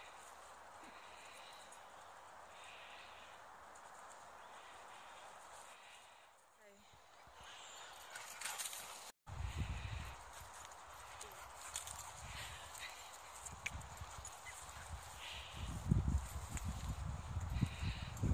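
Faint steady outdoor hiss, then, after a cut, irregular thudding footsteps on rough grass with wind rumble on the microphone, growing louder toward the end.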